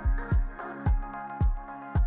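Background electronic music with a steady kick drum, about two beats a second, light hi-hat ticks between the beats and sustained synth chords.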